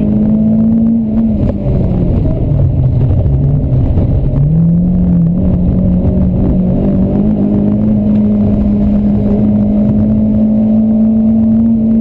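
Renault Clio Sport rally car's engine heard from inside the cabin at racing pace. A little over a second in, the revs drop as the car slows for a chicane. From about four seconds in it pulls hard again, its pitch climbing steadily.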